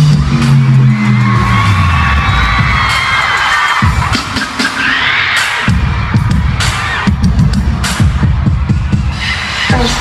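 Live arena concert sound: a deep electronic tone slides down over the first two seconds, under a crowd of fans screaming. From about halfway through, a regular pulsing bass beat comes in over the screaming.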